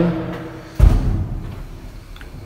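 A single dull, heavy thump a little under a second in, dying away over about a second, after a voice trails off at the start.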